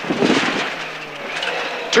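A Mk2 Ford Escort rally car's Pinto 8-valve four-cylinder engine running hard, heard inside the stripped cabin over a steady hiss of tyre and road noise; the engine note steps up slightly about a second and a half in.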